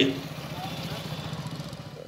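A small engine idling steadily under outdoor background noise.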